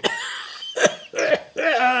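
A man coughing: a few sharp coughs in a row, the last one voiced.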